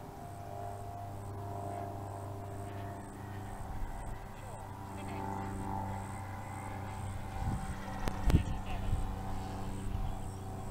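Electric motor and propeller of a foam FMS P-51 Mustang RC plane at full throttle, a steady whine that wavers slightly as it flies past. A few low rumbles come near the end.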